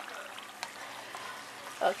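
Pieces of white sweet potato frying in hot oil in a frying pan, a steady sizzle, with a faint tick about halfway through.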